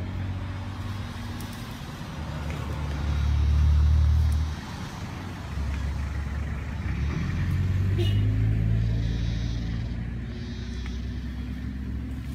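Motor vehicle engine running with a low rumble that grows loud about three seconds in and drops off sharply at about four and a half seconds, then swells again around eight seconds.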